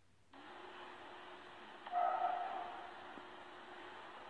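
A cat video playing through a phone's small speaker: a steady hiss comes on just after the start, then about two seconds in a kitten gives one short mew that fades off.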